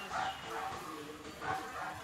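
A few faint, short animal calls in the background, spread through the pause.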